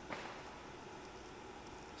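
Faint steady background hiss, with a small click right at the start.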